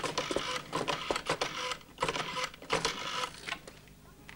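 Black rotary-dial telephone being dialled: the dial is turned and let go several times, each return a quick run of mechanical clicks, with short pauses between digits, stopping about three and a half seconds in.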